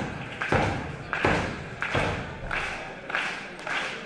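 Rhythmic thuds on a wrestling ring's mat, about three every two seconds.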